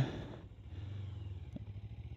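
1997 Kawasaki ZZR250's parallel-twin engine running steadily as a low, even hum while the bike rolls slowly, with one faint click about one and a half seconds in.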